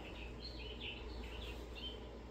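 Faint birdsong, short repeated chirps, played as the golf simulator's outdoor course ambience, over a steady low hum.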